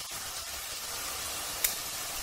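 Ground beef, onion, carrot and garlic sizzling steadily as they fry in a pot, with one short tick about one and a half seconds in.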